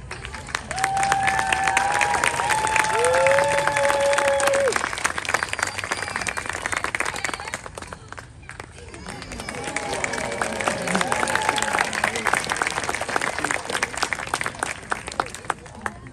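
Audience applauding and cheering, with a few long whoops in the first seconds; the clapping dips about halfway through, then swells again before dying away.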